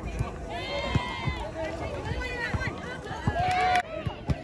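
Volleyball players shouting calls to each other during a rally, several voices, with a long held shout near the end. A few sharp hits are heard, typical of the ball being struck.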